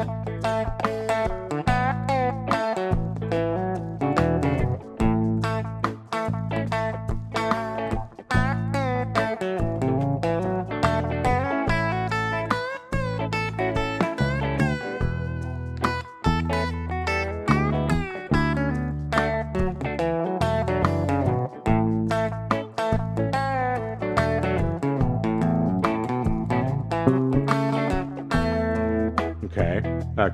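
Telecaster-style electric guitar improvising lead licks in A major pentatonic, a quick run of picked notes with bends and octave figures, over a slow groove backing track with a bass line underneath.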